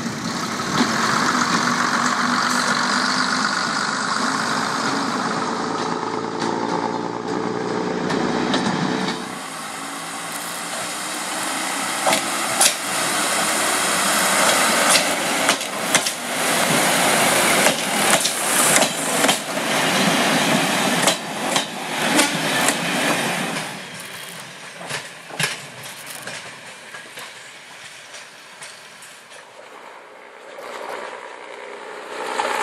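First-generation diesel multiple unit passing under power, its underfloor diesel engines running with a wavering note for about the first nine seconds. Then, about nine seconds in, the sound changes abruptly to a steady rush with a long run of sharp clicks and knocks from a second railcar. Near the end this drops to a quieter stretch with only occasional clicks.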